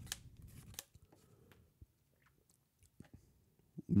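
Yu-Gi-Oh trading cards being flipped through by hand: card stock sliding and snapping off the stack, with two sharp clicks and a soft rustle in the first second, then only a few faint ticks.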